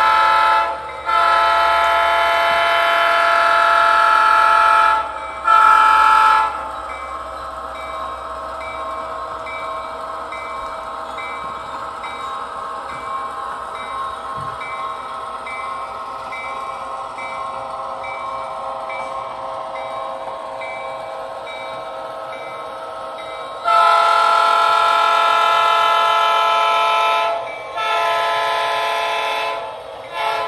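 A model locomotive's sound decoder blowing a multi-tone horn or whistle: a short blast, a long one and another short one in the first six seconds, then two more long blasts near the end. Between the blasts the model train runs with a steady, quieter sound and a faint regular ticking.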